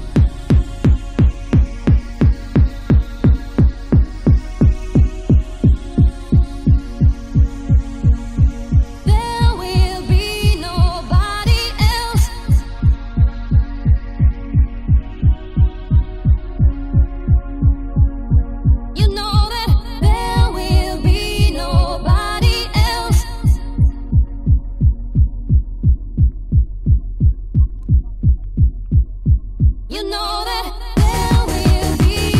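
Electronic dance music from a DJ set: a steady, evenly spaced kick drum over a low bass hum and held synth chords. A brighter synth melody comes in twice, once about nine seconds in and again a little before the twenty-second mark.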